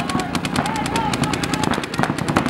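Paintball markers firing in a rapid, even stream of shots, many per second, with players shouting over them.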